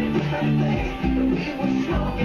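Electric bass guitar plucked in a steady, repeating rhythmic line of low notes, with music playing along.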